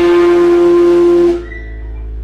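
Amplified guitar holding one loud sustained note, cut off abruptly about one and a half seconds in, with a quieter ringing left behind.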